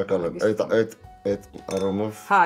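Champagne glasses clinking together in a toast, over voices and background music.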